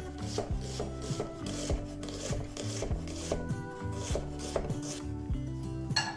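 Chef's knife chopping onion on a wooden cutting board, a steady run of about three knife strikes a second, with soft background music underneath.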